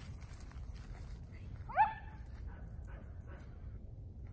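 A dog gives a single short, high bark about two seconds in, followed by a few faint whines.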